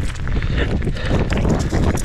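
A dog running hard on a dirt trail: a quick, irregular patter of footfalls and jostling thuds, with the clatter of a mountain bike rolling behind it.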